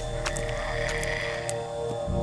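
Frog croaking sound effects over a steady electronic drone of several held tones, with a low rumble that fades out about halfway through.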